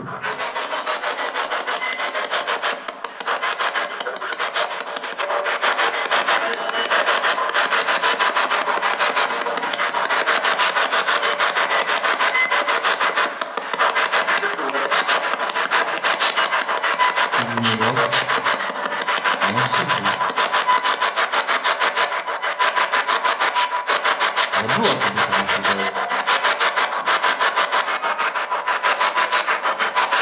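P-SB7 spirit box sweeping through radio stations: a continuous, fast, rhythmic chopping of static. A few brief voice-like snatches surface in the second half.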